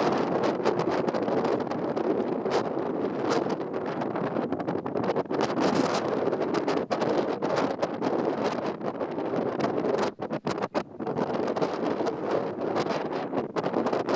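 Wind buffeting the camera's microphone: a loud, uneven rushing that rises and falls in gusts, with a brief lull about ten seconds in.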